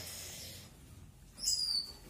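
Gouldian finch giving a single high, thin call of about half a second, about one and a half seconds in.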